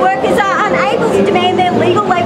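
A woman speaking aloud to a group, with crowd chatter behind her voice.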